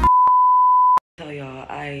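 A steady electronic beep, a single pure high tone lasting about a second and cutting off sharply, followed by a woman starting to talk.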